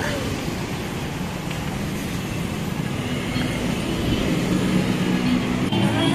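City road traffic: cars and motorcycles running along the street as a steady wash of noise. A low steady hum comes in about halfway through and grows louder toward the end.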